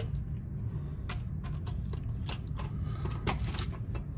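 Irregular light clicks and taps as a key card and the lever handle are handled at a cabin door's electronic lock, over a steady low hum.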